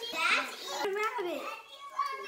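Children's high voices talking and exclaiming; only voices, the words not clear.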